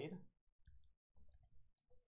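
Faint computer keyboard typing: a few soft, scattered key clicks.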